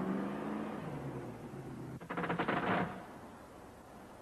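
A car passing on a road, its steady engine note fading away over the first second or so. About two seconds in comes a short, rapid rattling burst lasting under a second.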